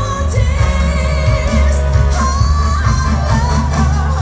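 Live soul band with a heavy bass line, and a woman singing long, wavering notes over it through the arena's sound system.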